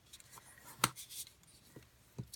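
A scored paper strip being folded and creased with a bone folder: faint rubbing, with one sharp click a little under a second in and a couple of softer ticks after it.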